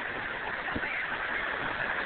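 Steady rushing background noise, with a faint low knock about three-quarters of a second in.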